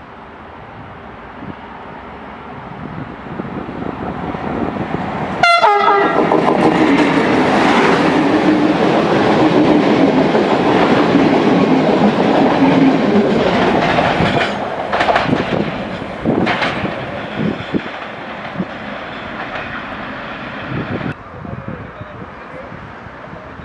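Ganz-MÁVAG BVmot diesel multiple unit approaching at speed and sounding one short horn blast about five seconds in, then passing close by loudly, its wheels clattering over the rail joints as the cars go past, and fading away.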